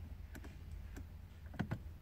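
A few soft clicks of the BMW iDrive rotary controller being turned and pressed to step through the navigation menu, the loudest pair near the end, over a low steady hum.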